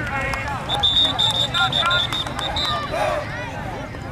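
Referee's pea whistle blown in one trilling blast of about two seconds, starting about a second in, signalling the play dead after a tackle. Overlapping voices of spectators and players run underneath.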